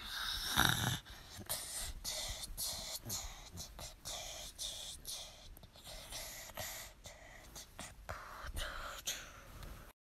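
Faint whispering, a person's breathy voice in short fragments, with a louder breath-like burst about half a second in.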